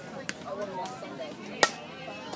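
Fastpitch softball bat hitting the ball: one sharp crack about a second and a half in, over faint spectator chatter.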